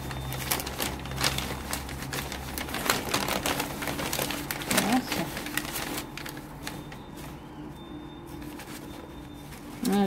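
Sheets of white wrapping paper rustling and crinkling as they are handled inside a cardboard box, a dense run of crackles that thins out after about six seconds.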